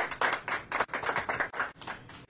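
A small group of people clapping briefly, a quick irregular patter of hand claps that dies away near the end.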